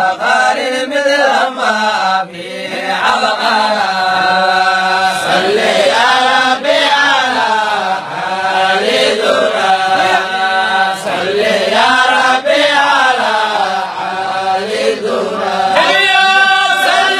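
A man's solo voice chanting into a microphone: a melodic Islamic recitation with long held notes that bend and waver, running on without a break.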